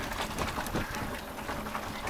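Steady noisy rush of steam from a wood-fired Admiralty portable boiler, blown through a hose into a bucket to heat the water scalding hot, with a few faint clicks.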